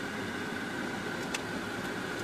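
Steady road and engine noise heard inside a moving car, with one faint click about a second and a half in.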